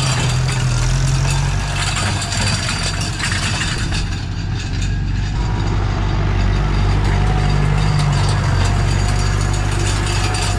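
Massey Ferguson tractor's diesel engine running steadily while pulling a grass harrow and seed broadcaster across a field. It dips slightly about halfway through, then comes back strong.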